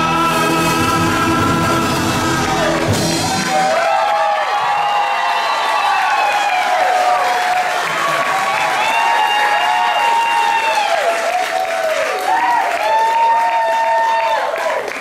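A live rock band and singer hold a chord that cuts off about three and a half seconds in. The audience then cheers and whoops, with many voices rising and falling over each other.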